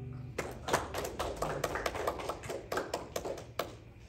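Scattered hand claps from a few people in a small church congregation, sharp and irregular in a reverberant room, lasting about three seconds. Before them, the last acoustic guitar chord dies away.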